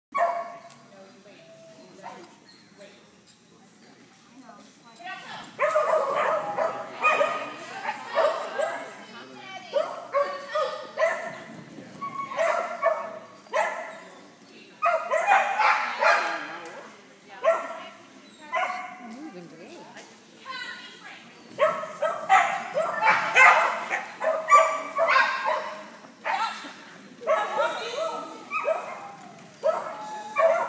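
A dog barking repeatedly, mixed with a handler calling out short commands, starting about five seconds in and carrying on in quick irregular bursts.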